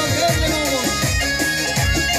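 Amplified live Kurdish folk dance music from a band with bağlama and keyboard: a melody with sliding notes over a steady beat of about two beats a second.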